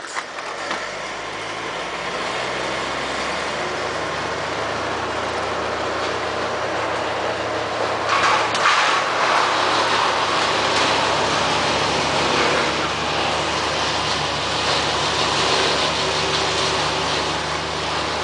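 Hard plastic wheels of a child's tricycle rolling on a concrete floor: a continuous rolling rumble that grows louder and rougher from about eight seconds in, over a low steady hum.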